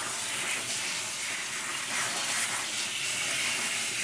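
Water from a handheld sink sprayer running steadily, spraying onto a puppy's wet coat and into a sink: an even hiss.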